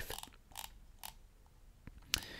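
A few faint, scattered clicks over low room noise, spread through the quiet.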